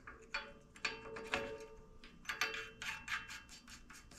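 Faint, irregular small metal clicks and ticks, several a second, as the stud is fitted by hand into the adjustable ball joint in the steering knuckle.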